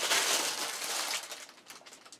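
A plastic bag crinkling as it is handled, fading out about one and a half seconds in.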